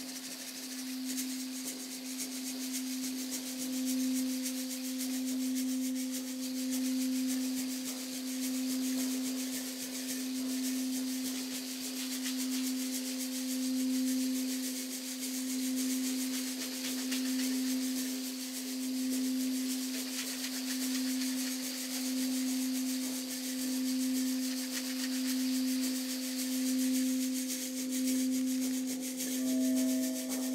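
Crystal singing bowl rubbed around its rim, holding one low, pure tone that swells and fades gently every couple of seconds. A second, higher bowl tone joins near the end.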